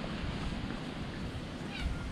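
A domestic cat gives one short, high-pitched meow near the end, over a steady low background rumble.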